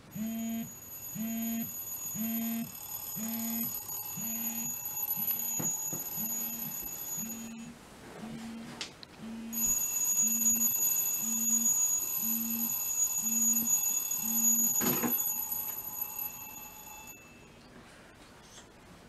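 Smartphone alarm ringing with a repeating beep about once a second. It breaks off for about two seconds midway, then resumes. A sharp knock comes about fifteen seconds in, and the alarm stops soon after.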